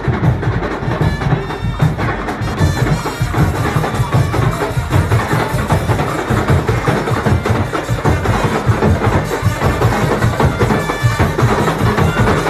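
Loud, continuous percussion-driven carnival street music, with drums beating a steady rhythm.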